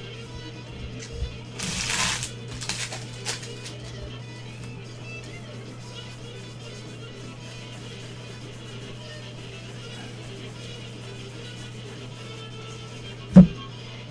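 Trading cards handled in gloved hands, with short papery rustles about two seconds in and a single sharp thump near the end, over quiet background music and a steady low hum.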